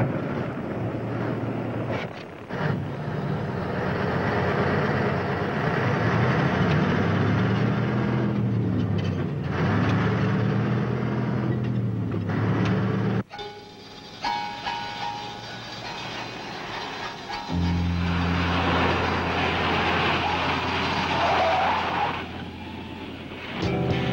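Diesel semi-truck engine pulling under load, its pitch rising and falling several times, mixed with film music. The sound cuts off abruptly about halfway through, and a steady low hum follows later.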